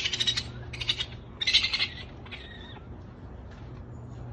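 Baby raccoons crying with high-pitched chittering calls, several short bursts over the first two and a half seconds.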